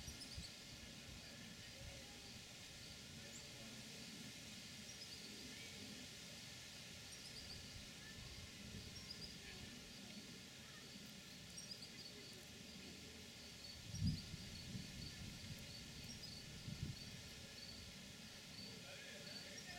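Faint outdoor garden ambience with scattered small, high chirps throughout, and a low thump about fourteen seconds in and another near the end.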